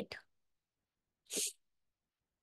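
The tail of a spoken word at the start, then about a second and a half in one short, breathy non-speech vocal sound from a person, much quieter than the speech.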